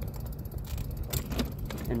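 Riding noise of a Juiced Scorpion X electric bike and its front-mounted dog sidecar rolling along: a steady low rumble with a few light clicks and rattles.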